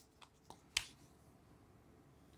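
Three short, sharp clicks in a quiet room, the loudest just under a second in.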